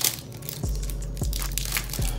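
Foil Pokémon card booster pack crinkling and tearing as it is pulled open by hand, in a run of sharp crackles.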